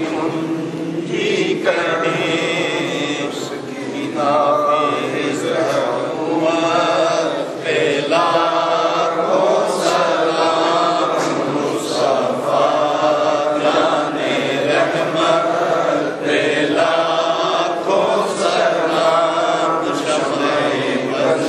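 Men's voices chanting a melodic religious recitation, phrase after phrase without a break.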